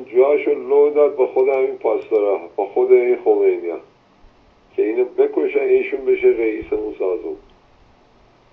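A caller's voice coming through a telephone line, thin and narrow-sounding: about four seconds of talk, a short pause, then more talk, ending shortly before the end.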